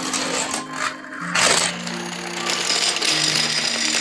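Toy dominoes toppling in a chain, a rapid stream of clattering clicks with a louder burst of clatter about a second and a half in, over background music.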